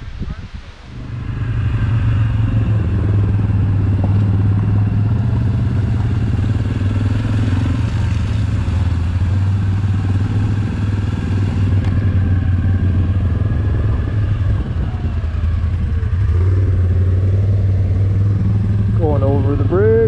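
ATV (quad) engine running at a steady riding pace. It comes up about a second in, then holds an even low drone with small rises and dips in speed.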